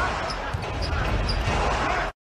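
A basketball being dribbled on a hardwood court, about two bounces a second, over steady arena crowd noise and voices.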